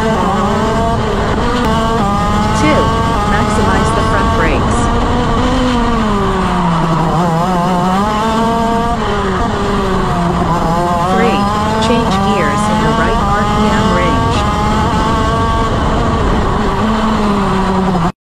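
KZ shifter kart's 125 cc two-stroke engine pulling hard from a launch, its pitch climbing and then dropping sharply at each upshift, about once a second through the first few gears. Later the engine note falls away and climbs again several times as the kart slows for corners and accelerates out through the gears.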